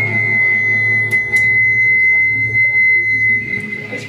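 A single steady high-pitched whine of amplifier feedback, held for about three and a half seconds over a low hum, with a couple of clicks about a second in.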